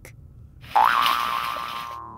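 Cartoon jump sound effect as the animated frog leaps up out of the picture: about three-quarters of a second in, a quick upward swoop in pitch that settles into a held, hissy tone, fading away.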